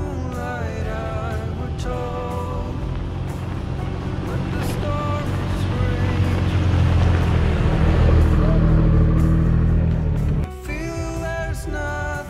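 A song with a singer plays throughout. Under it a Toyota Tacoma pickup drives past on a dirt road: its engine and tyre noise grows louder, peaks a couple of seconds before the end, and cuts off abruptly.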